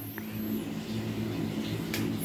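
A steady low hum at an even pitch.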